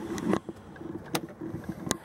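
Side door of a Dodge van rolling open on its track with a clunk, followed by a few sharp clicks.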